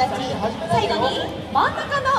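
Audience chatter: several voices talking at once, some of them high like children's.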